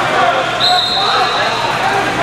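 People talking and calling out in a large gym. A steady high-pitched tone comes in about half a second in and holds through most of the rest.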